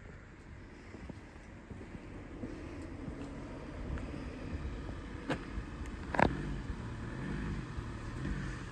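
Box van's engine running at low speed as it is manoeuvred, a low rumble growing louder, with a sharp knock about six seconds in.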